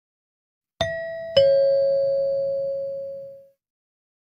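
A two-tone ding-dong chime: a higher note struck about a second in, then a lower note just over half a second later that rings out and fades away over about two seconds.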